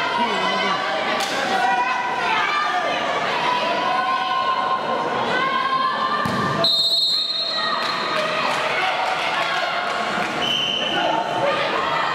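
Shouting voices echoing in a large sports hall, the sound of coaches and spectators calling during a wrestling pin. About six and a half seconds in comes a thud, followed by a steady referee's whistle blast of about a second that signals the fall.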